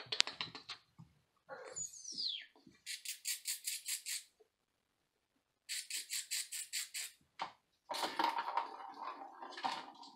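Ball rolling and rattling around inside a plastic circular track cat toy as a kitten bats it, in two runs of quick, even clicks a couple of seconds apart. A short high falling squeak comes about 2 s in, and a denser clatter of the toy near the end.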